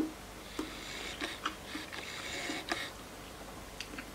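Faint chewing and mouth sounds of a person eating a mouthful of tortellini salad, with a few soft, short clicks scattered through it.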